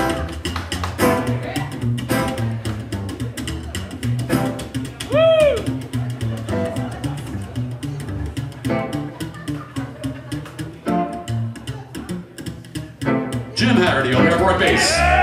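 Instrumental break of a live country band: electric guitar and strummed acoustic guitar over a slapped upright bass keeping a steady, clicking rhythm. A brief rising-and-falling note cuts through about five seconds in.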